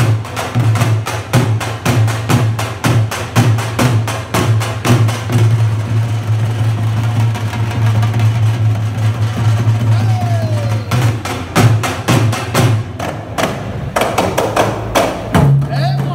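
Dhol drums beaten with sticks in a fast, loud rhythm together with other hand drums, over a steady low tone. The strokes thin out for a few seconds in the middle, then come back dense.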